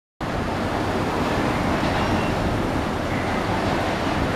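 Steady city street traffic noise: a low rumble of motorbikes, tuk-tuks and cars moving slowly along the road.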